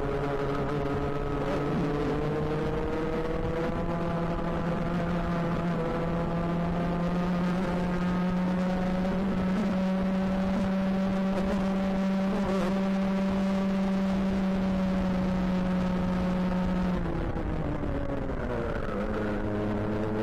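Two-stroke racing kart engine heard onboard at high revs, the pitch climbing slowly and then holding steady along a fast stretch. About three seconds before the end the revs fall away sharply as the throttle is lifted for a bend, then the engine picks up again at lower revs.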